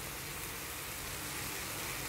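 Shrimp frying in garlic butter in a pan on a gas stove, a steady sizzle.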